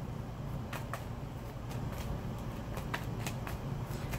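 A tarot deck being shuffled by hand: a scattering of short, soft card clicks and slaps over a faint steady low hum.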